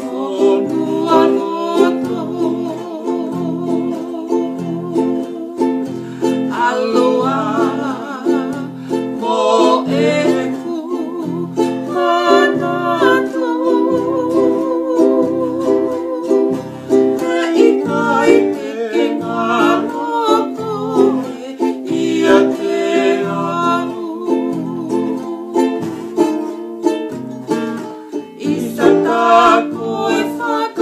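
A woman singing a Tongan love song with vibrato, accompanied by strummed ukulele and acoustic guitar.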